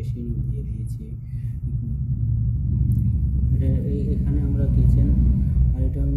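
A low rumble that grows gradually louder, with a man's voice murmuring at the very start and again through the second half.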